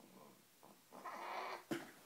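A baby's short fussing cry, starting about a second in and lasting about half a second, followed by a single sharp click.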